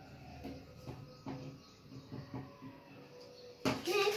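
Faint scraping and light taps of a glue stick being rubbed onto a paper cut-out lying on a table. Near the end comes a single louder knock on the table.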